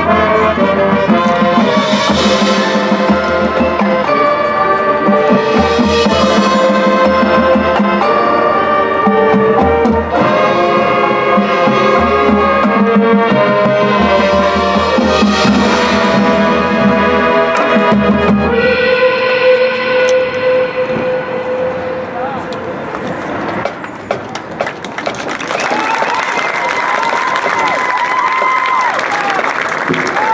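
Marching band brass playing the closing passage of a field show over a steady low pulse, ending on one long held chord that fades out about three-quarters of the way through. The crowd then cheers and applauds.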